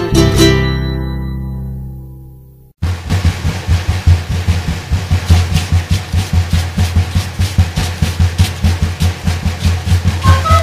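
Andean Altiplano folk music: the last chord of one song rings out and fades, there is a brief silence about three seconds in, and then a carnaval from Moho starts with fast, even strumming of plucked strings over a steady bass drum beat.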